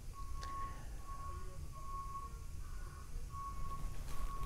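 A faint, steady high-pitched whine with a few short breaks, over a low rumble.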